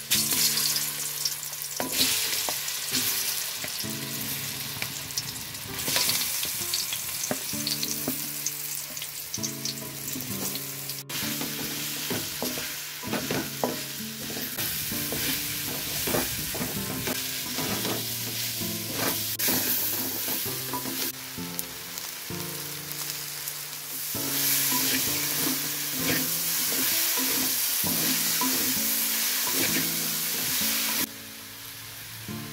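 Ripe plantain slices sizzling as they fry in hot oil in a metal pan, with a wooden spatula scraping and turning them. The sizzle grows louder near the end.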